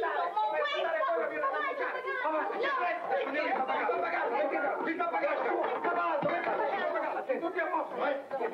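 Several people talking over one another at once, a jumble of overlapping voices.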